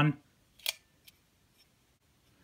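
A single sharp click from the small Blue Sea circuit breaker and its stainless steel cover plate being handled, followed by a much fainter click.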